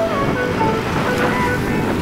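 Background music, a melody of short held notes changing pitch, over a steady rush of wind and road noise from the moving scooter.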